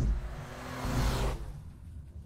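Sound-designed whoosh of a logo transition: a sudden deep hit at the start, then a rushing swell that peaks about a second in and fades away, over a low rumble.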